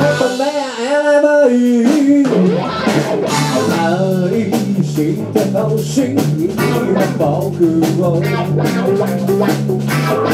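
Live band music: electric guitar, bass and drum kit. For about the first two seconds a held, wavering melodic line sounds alone with the bass and drums dropped out, then the full band comes in with a steady beat.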